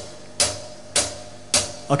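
A steady percussive click beat, one sharp tick about every half second, played as the opening rhythm track of a live band.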